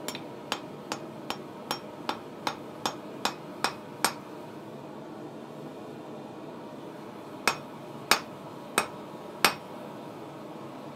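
Hand hammer striking a hot steel block on a small Acciaio anvil: a run of about eleven quick blows that grow harder, a pause of a few seconds, then four heavier, slower blows.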